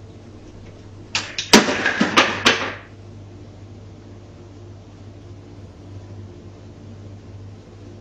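A loud clatter lasting about a second and a half, made of several sharp knocks in quick succession, like objects banging and rattling. A steady low electrical hum runs under it.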